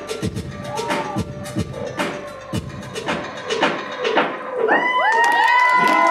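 Hip hop dance track with a steady, deep drum beat. Near the end the music gives way to an audience cheering and shouting in high voices, children's among them, which grows louder.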